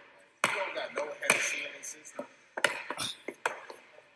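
A basketball bouncing on an indoor gym court: several separate, irregularly spaced thuds.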